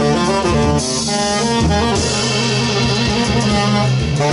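Free-jazz duet of tenor saxophone and double bass: the saxophone plays a quick run of notes, then holds one long note through the second half, with the double bass sounding low notes underneath.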